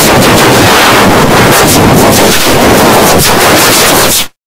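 Harsh, heavily distorted audio at constant full loudness: a dense noise with no clear tones. It is a meme logo soundtrack overdriven by video-editor effects.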